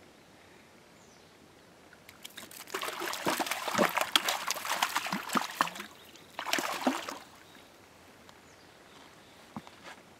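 A hooked brown trout splashing in shallow water at the shore as it is landed by hand. A dense run of rapid splashes starts about two seconds in and lasts about three and a half seconds, then there is a shorter burst of splashing a little later.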